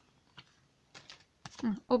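A few light, scattered clicks of tarot cards being lifted and handled against each other, then a woman's voice starts near the end.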